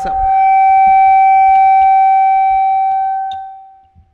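Loud, steady, high-pitched howl of microphone feedback through the chamber's sound system as a table microphone is switched on and moved. It swells in at once, holds one pitch for about three seconds, then fades away.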